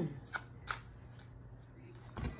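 Tarot cards being shuffled by hand: two short card snaps within the first second, then only a faint low hum.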